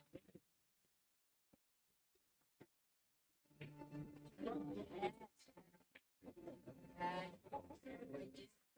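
Near silence with a few faint clicks, then faint voices talking in the background from about halfway through.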